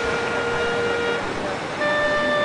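Clarinet holding one long steady note that ends a little past a second in, then starting a higher note near the end, over a steady background hiss.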